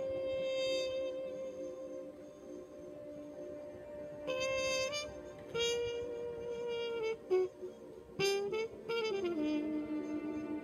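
A trumpet-family brass horn played solo and live: long held notes with pauses between them, the last phrase sliding downward about nine seconds in. A steady sustained drone runs underneath.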